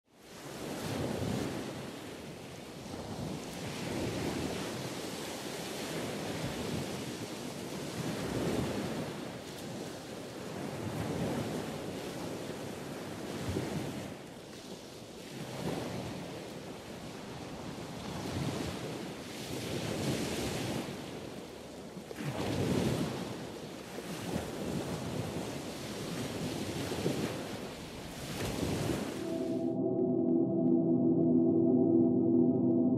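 Ocean surf washing onto a beach, the waves swelling and falling away every few seconds. The sound cuts off suddenly just before the end.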